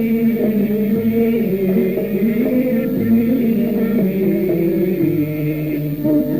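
Constantine malouf recording: a male voice chanting long, ornamented held notes with instrumental accompaniment and a low beat about every two seconds.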